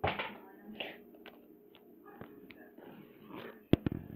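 Handling noise from a small plastic toy figure moved and tapped on a hard floor: soft rustles and light taps, then two sharp clicks close together near the end, the loudest sounds.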